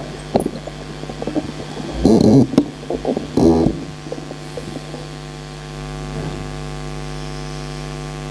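Steady electrical mains hum from the public-address system's microphone and amplifier, with two short louder patches of noise about two and three and a half seconds in.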